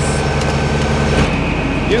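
Semi truck's diesel engine idling steadily; a little over a second in the sound changes abruptly to a different, lower engine rumble.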